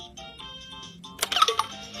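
VTech Letter Sounds Learning Bus toy playing a faint electronic tune through its small speaker. About a second in comes a sharp click, then a quick burst of louder electronic chirps as the toy moves on to the next letter.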